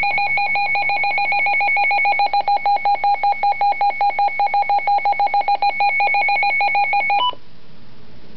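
Midland WR-100B weather radio's built-in alert alarm sounding during an alert test: a very loud, rapidly pulsing electronic beep. It cuts off suddenly after about seven seconds, just after a brief change of pitch. This is the alarm the radio gives for a weather warning.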